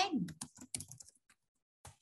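Typing on a computer keyboard: a quick run of keystrokes over the first second, then a single keystroke near the end.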